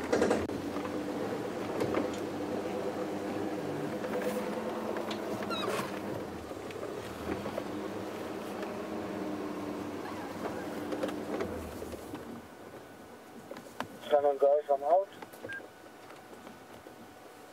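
Open safari vehicle's engine running steadily as it drives slowly along a bush track, then dropping away about twelve seconds in as the vehicle stops. A brief voice near the end.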